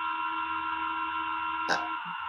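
Steady electronic hum made of several held tones over a low noise floor, coming through a participant's unmuted microphone on a video call.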